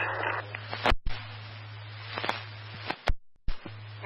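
Police radio scanner between transmissions: open-channel static hiss broken by several sharp squelch clicks as units key up and unkey, with a brief dropout near the end. A steady low hum runs underneath.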